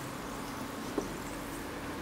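Faint steady fizzing hiss of a hydrochloric acid and hydrogen peroxide PCB etching bath gassing off in its tray, with one light click about a second in.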